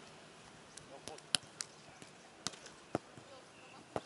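Beach volleyball being played: a handful of sharp slaps of hands striking the ball, the loudest a little over a second in, with faint voices behind.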